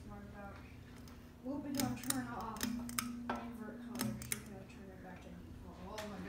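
Hunter Cabana ceiling fan running with a steady low hum, under a person's humming and murmuring voice. A handful of sharp ticks come about two to four seconds in.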